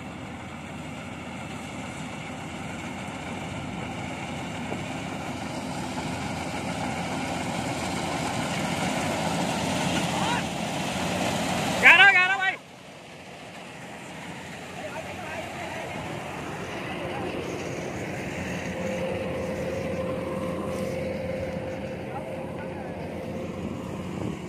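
Rice combine harvester's engine running steadily, growing louder as the machine comes across the paddy. About halfway a brief loud voice call cuts in, then the machine noise drops off suddenly and slowly builds again.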